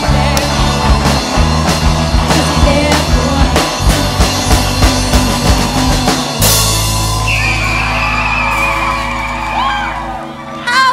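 Rock music with a drum-kit beat. About six seconds in it ends on a cymbal crash and a long held final chord with a high note sustained over it.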